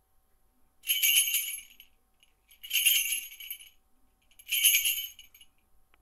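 Small metal bells jingling, shaken in three bursts about two seconds apart.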